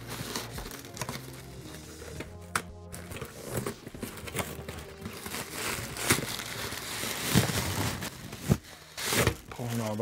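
A cardboard box being pried open at its bottom flaps by hand: rustling and crinkling of cardboard, with a few sharp tearing or scraping sounds in the second half. Background music plays underneath.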